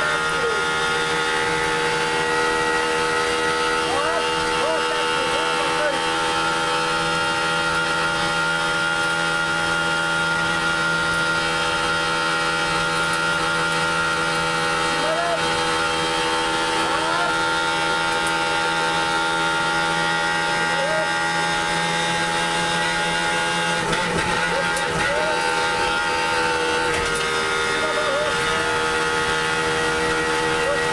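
Rally car's engine running hard at high, fairly steady revs, heard from inside the cabin over tyre and road noise, with a shift in engine pitch around two-thirds of the way through. Short voice fragments come through over the engine at intervals.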